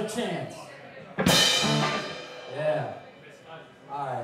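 Live rock band: a man's voice at the microphone, broken by a sudden loud hit of drums and electric guitar a little over a second in, with short held vocal phrases after it.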